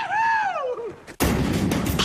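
A high-pitched cheering voice holds a 'whoo-hoo'-like call, then slides down in pitch and dies away just before a second in. A little after a second in, a sudden loud burst of noise cuts in and keeps going.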